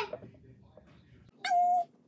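A domestic cat gives one short meow, about a second and a half in, held at a steady pitch.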